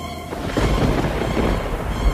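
A thunder rumble sound effect with rain swells up about a third of a second in, heavy in the low end, over dark background music.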